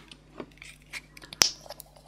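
A few small clicks of a plastic paint bottle being handled, then one sharp snap about one and a half seconds in as its plastic flip-top cap is popped open.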